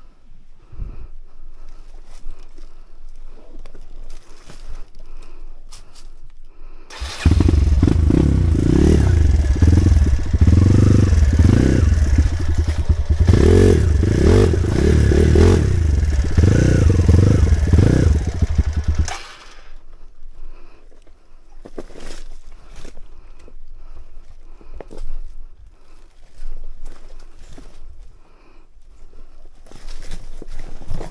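Dirt bike engine revving hard for about twelve seconds, its pitch rising and falling as the throttle is worked; it starts and stops abruptly. Before and after it, quieter rattling and clicking of the bike over loose rocks.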